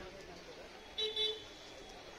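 A horn gives two short toots about a second in, over faint background voices.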